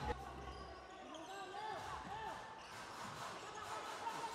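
Faint ambience of an indoor basketball game in a large hall, with distant voices.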